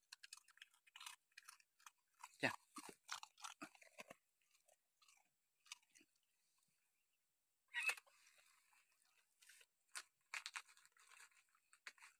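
Dogs chewing and crunching food: a faint, irregular scatter of short crunches, with a few louder ones.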